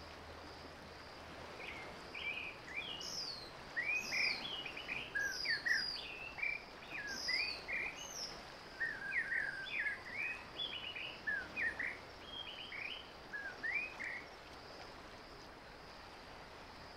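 A bird chirping in a quick series of short notes that starts about two seconds in and stops near the end, over a steady high-pitched insect drone.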